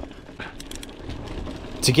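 Voodoo Bizango 29er hardtail mountain bike rolling over a dry, bumpy dirt trail: a fairly quiet, even tyre-and-trail noise with faint clicks and rattles from the bike.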